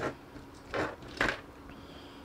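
Two short plastic clicks from the parts of an S.H. Figuarts action figure as they are handled and worked apart by hand, about half a second apart near the middle.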